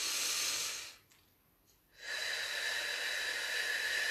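A woman's demonstration breath for the golden thread pranayama: a sharp in-breath through the nose for about a second, a short pause, then a long, slow out-breath through finely parted lips. The out-breath is a steady airy hiss with a faint thin whistle and is far longer than the in-breath.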